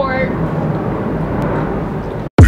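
An airplane going by overhead, a steady drone of engine noise.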